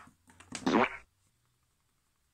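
A person's short rasping mouth noise, about half a second long, beginning about half a second in, with a faint tap just before it.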